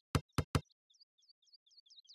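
Cartoon xylophone's mallets tapping its bars very quietly: three dull knocks in the first half-second with no clear ringing note. After them a faint run of quick, high, falling bird chirps.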